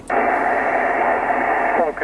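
Yaesu FT-857D receiver hissing with steady band noise on 21.305 MHz upper sideband, the hiss cut off above the narrow voice passband, while the operator listens for replies after his call. An answering station's voice starts coming through near the end.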